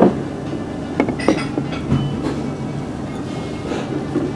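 Eatery room noise: a steady low hum with a few brief clinks and knocks about a second in.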